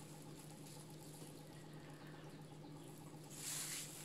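Quiet room with a faint steady hum; a little over three seconds in, a brief soft rustle of a plastic bag and thin plastic gloves as a wrapped piece of beef is handled.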